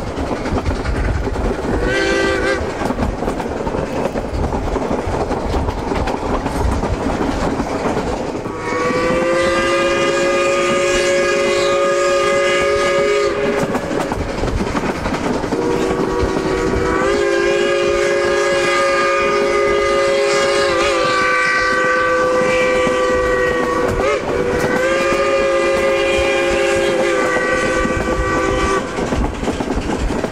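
Steam whistle of the train's K-28 locomotive 473, heard from the caboose at the rear: a short toot about two seconds in, then a string of long blasts with brief breaks, each sounding several notes at once. Under it the train's wheels clatter steadily over the rail joints.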